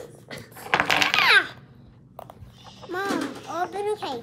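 A young child's high-pitched wordless vocalising, twice: about a second in and again near the end. In the quiet gap between there are a few faint clicks of wooden toy blocks being handled.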